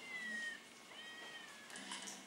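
Two high-pitched cat mews, each about half a second long and falling slightly in pitch, heard through a television's speaker.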